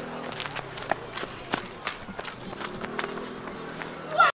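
Footsteps of a person running hard on a dirt road: quick, uneven footfalls about two to three a second, over a low steady hum.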